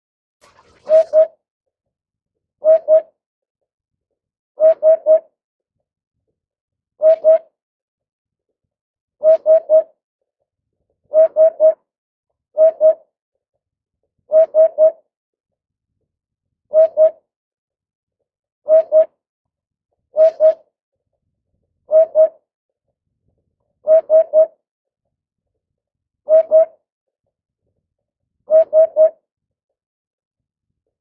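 Eurasian hoopoe singing its low 'oop-oop-oop' song: groups of two or three short notes, repeated about every two seconds.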